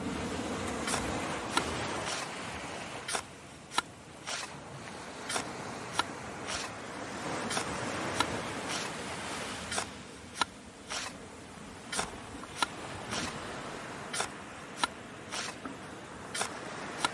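Shovels digging into sand, given as a sound effect: a steady scraping with sharp, uneven strikes about once or twice a second.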